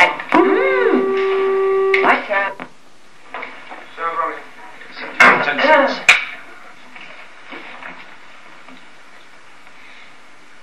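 A voice holds one steady note for about two seconds. Then come short muffled voice fragments and two sharp clicks, and after that a low steady room hum.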